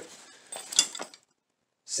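Brief rustling and handling of a fabric shoulder bag, one louder rustle under a second in, then the sound cuts to dead silence.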